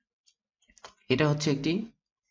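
Mostly speech: a voice talking for about a second in the second half. Before it come a few faint keyboard clicks.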